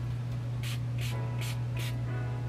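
Pump spray bottle of lace tint being spritzed in short, quick puffs, about two a second, over a steady low hum.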